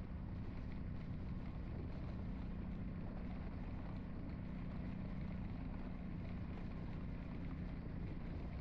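A vehicle's engine running at a steady speed under way, with a constant low hum and road noise.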